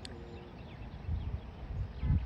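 Quiet outdoor ambience: low rumbles of wind buffeting the microphone about a second in and again near the end, over faint distant bird chirps.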